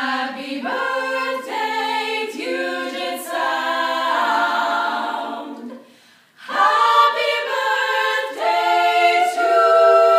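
Female a cappella group of about eight voices singing sustained chords in close harmony. The chords break off briefly about six seconds in, then the singing resumes louder.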